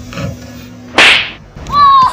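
A sudden loud swish, a whip-type sound effect, about a second in, fading within half a second. A sung note of the background music comes in near the end.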